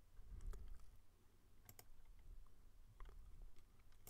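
Near silence: a faint low room hum with a few short, faint clicks from working a computer.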